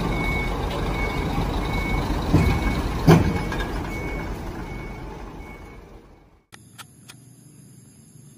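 Concrete mixer truck's diesel engine running with its reversing alarm beeping steadily, about one and a half beeps a second. A sharp knock comes about three seconds in, and the sound fades and cuts off about six seconds in.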